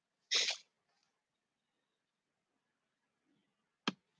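A short, sharp puff of breath through the nose about a third of a second in, then a single sharp click near the end, with near silence between.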